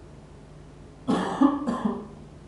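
A person clearing their throat with a cough, in two quick bursts about a second in, all over in under a second.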